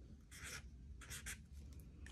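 Faint scratching of a felt-tip marker on kraft cardstock as a number is written, in a few short strokes.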